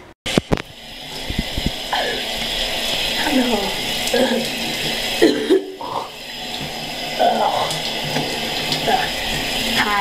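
Shower spray running steadily, with a voice laughing and making sounds over the water. The water starts about half a second in and drops out briefly near the middle.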